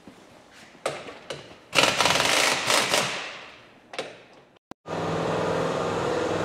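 Pneumatic impact wrench hammering a truck's wheel lug nuts loose in a rapid rattle for about a second and a half, then dying away. Near the end a steady mechanical hum starts.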